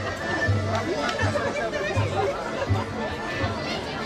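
A Polish folk band playing, its bass notes marking a steady beat, under the chatter of a crowd.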